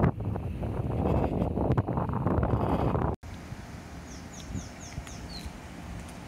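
Wind buffeting the microphone, which cuts off abruptly about three seconds in; then a quieter outdoor background in which a bird gives a quick run of about five short, falling chirps.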